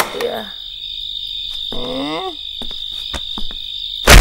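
Crickets chirring steadily, with one short rising-and-falling vocal sound about halfway through and a few faint clicks.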